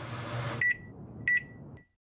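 Microwave oven running with a steady hum that cuts off as the timer ends, followed by its electronic beeps: two clear high beeps about three-quarters of a second apart, then a short faint one. The beeps signal that cooking is done.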